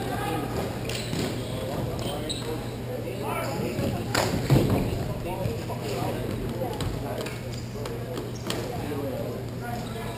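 Inline hockey play in an echoing rink hall: indistinct talking mixed with scattered clacks of sticks and ball or puck on the hard floor, and one loud knock about four and a half seconds in.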